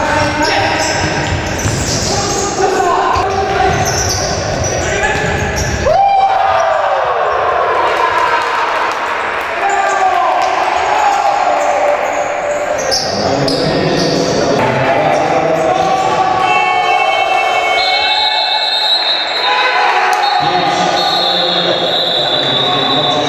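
Futsal game sound in a sports hall: the ball being kicked and bouncing on the wooden floor amid players' shouts, echoing in the hall, with a sharp hit about six seconds in.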